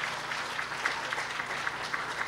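Congregation applauding: a steady patter of many people clapping.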